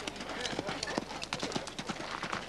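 Hoofbeats of a horse cantering past on a sand arena: a quick, uneven run of dull thuds.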